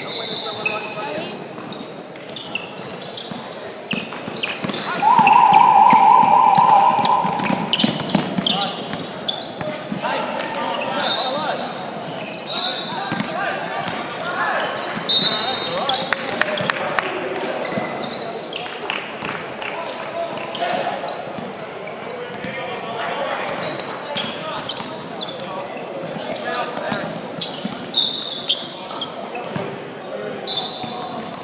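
Indoor basketball game sounds echoing in a large hall: a ball bouncing on the hardwood court, brief high sneaker squeaks, and players' and spectators' voices. About five seconds in, a loud warbling buzzer tone sounds for about two and a half seconds.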